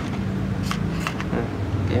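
A few short, light metallic clicks as a telescopic metal antenna is fitted to a toy car's handheld remote control and pulled out.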